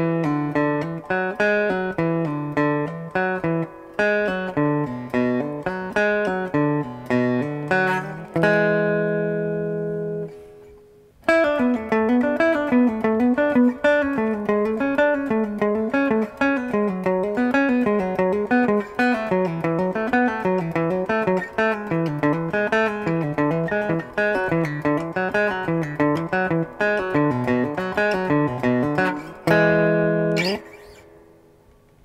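Three-string cigar box guitar with a pickup, playing hammer-on and pull-off warm-up exercises: quick fretted notes stepping up and down in repeating patterns. About eight seconds in, a chord is held and rings out, with a short pause after it. The runs then start again and end on a held chord near the end.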